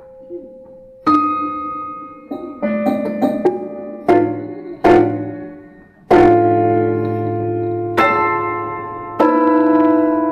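Prepared grand piano being played, its strings fitted with bolts, screws and rubber: single notes and chords struck about a second or two apart, each ringing on and slowly dying away.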